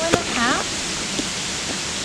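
A steady, even hiss of background noise, after a woman's voice says a couple of words at the start.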